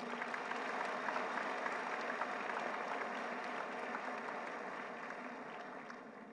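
Audience applauding, a steady clatter of many hands that slowly dies away toward the end.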